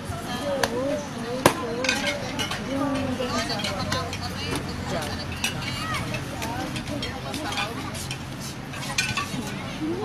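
Ambient sound at a baseball field: background voices of players and onlookers calling and talking, broken by a few sharp knocks, the loudest about one and a half seconds in.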